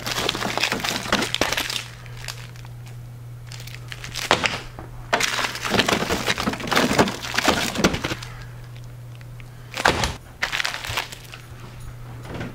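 Frozen pizzas in plastic wrap being shuffled and pulled out of a freezer drawer: the packaging crinkles and crackles and the frozen packs knock together, in three spells.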